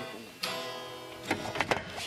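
Acoustic guitar strummed. One chord starts about half a second in and rings out, followed by a few quick strums near the end.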